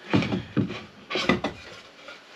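A cut wooden partition board knocking and scraping against plywood panelling as it is handled and pulled out of place: a few short knocks and a rubbing scrape.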